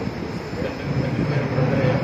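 A man's voice chanting Sanskrit mantras in a steady drone over a continuous loud rumbling background noise; the chant grows more distinct about a second in.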